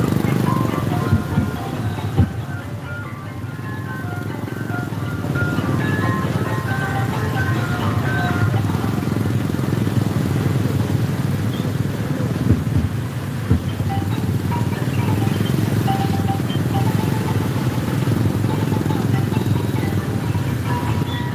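Music with short, separate melody notes, heard over the steady low noise of motorcycles and a vehicle driving slowly along a road. A few sharp knocks come through, twice near the start and twice about two-thirds of the way in.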